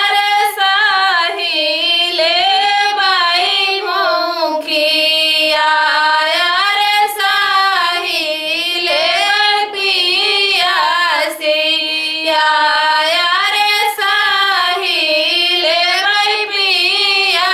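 Two women singing a suhag wedding folk song (lokgeet) together, unaccompanied: one flowing melody with long held notes and short breaths between phrases.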